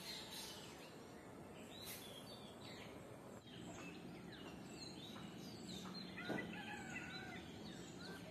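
Several birds chirping and calling in short, overlapping notes over a steady low background noise, with a slightly louder sound about six seconds in.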